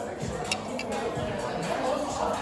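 Murmur of voices in a busy restaurant, with two short sharp clicks a little after half a second in.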